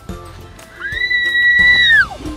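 A child's long, high-pitched squeal, starting about a second in, held steady, then dropping off at the end, over background music.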